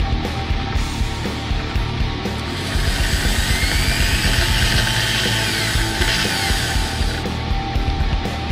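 Background rock music throughout. From about two and a half to seven seconds in, an electric drill spins a wooden ring on a shaft in its chuck while the ring is sanded by hand, a steady hiss under the music.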